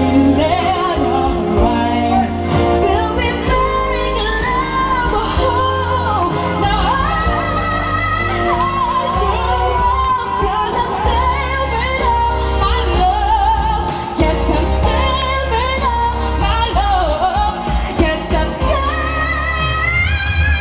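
A solo pop singer belting a song live, the melody wavering with vibrato, over amplified keyboard and bass accompaniment.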